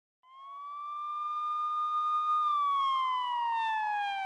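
A single siren-like wail fades in, rises slightly, holds, then glides slowly down in pitch.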